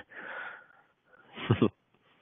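A man's breathy exhale, then a short pitched sound about one and a half seconds in, leading into a laugh, heard over narrow, thin web-call audio.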